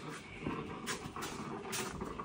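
Small drip coffee maker hissing and gurgling as it brews, with a couple of sharp clicks.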